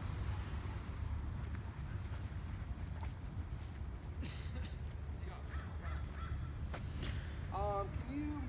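Outdoor ambience: a steady low rumble, a few faint clicks, and near the end a short pitched call that rises and falls.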